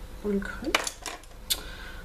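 Makeup brushes with wooden handles and metal ferrules clinking and tapping against each other as they are handled: a few sharp clicks, the loudest about three quarters of a second in and another about halfway through the second second.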